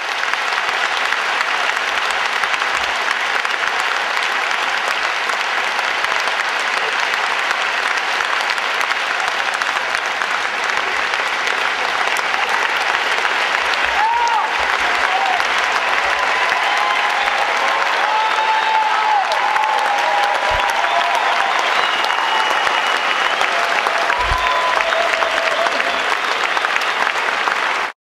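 Large audience applauding loudly and steadily at the close of a speech, with shouts and cheers rising over the clapping from about halfway through.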